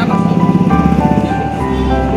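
Background music: held melodic notes that change every half second or so over a quick, steady low pulse.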